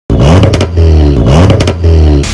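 Car engine revved hard twice. Each time the pitch climbs quickly, two sharp cracks follow, and the engine holds a high steady note.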